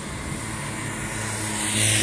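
A tram running along its tracks: a steady low hum, with a hiss of rolling noise that builds from about halfway and is loudest at the end as it comes closer.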